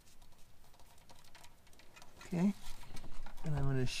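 Faint, scattered small clicks and scrapes of metal hardware handled by hand, as a trailer-hitch bolt is worked onto a fish wire at the car's frame rail. A man's voice comes in about halfway through and is louder.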